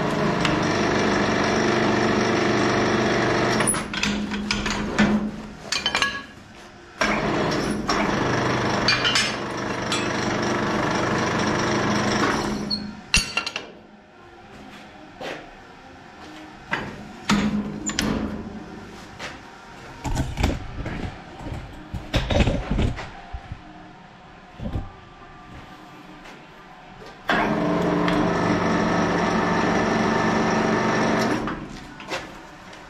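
Drive motor and gearing of a homemade three-roll bending-rolling machine running in three separate runs as it twists a steel flat bar: about four seconds at the start, about five seconds starting a few seconds later, and again near the end. Sharp metal knocks and clanks fall in the quieter gaps between runs.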